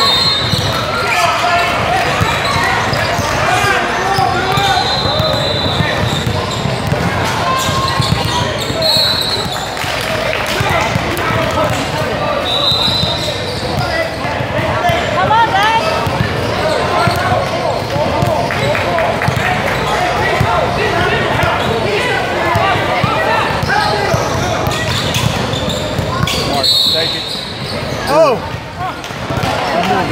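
Basketball dribbled and bouncing on a hardwood gym floor, with indistinct spectator chatter echoing in the large hall and a few short high squeaks of sneakers on the court.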